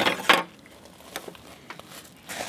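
A metal speed square scraping across a wooden board as it is laid down, followed by a few light taps.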